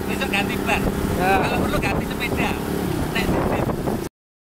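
Motorcycle engine idling steadily, with people talking close by over it.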